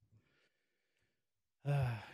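A faint breath, a short sigh-like exhale, in a pause in speech, followed near the end by a man's hesitant 'uh'.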